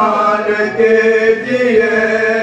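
Men's voices chanting an Urdu marsiya, a mourning elegy, in a slow melodic recitation. The reciter is joined by several other voices, with long held notes that step from pitch to pitch.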